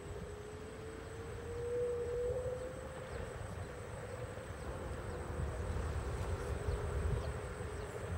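Electric scooter motor whining in a steady tone that rises slightly over the first few seconds as it gathers speed, then holds level, over a low rumble of wind and tyres on asphalt.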